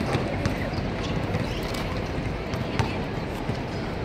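Basketball bounced a few separate times on an outdoor hard court before a free throw, over a steady murmur of spectators and open-air background noise.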